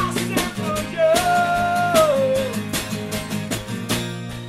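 Acoustic pop-punk song: a strummed acoustic guitar and a snare drum, with a man singing one long held note that slides down in pitch about halfway through.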